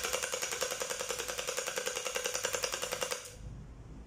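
Electric gel blaster (hydrogel-bead toy rifle) firing on full auto: a rapid, even rattle of shots over a steady motor whine, stopping about three seconds in.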